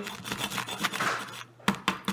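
Small plastic toy hammer tapping on a hard plaster dig-kit block: a series of light, irregular taps, the loudest near the end. The block is not breaking under the toy hammer.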